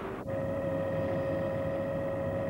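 Steady engine drone with a constant hum, setting in abruptly about a quarter second in.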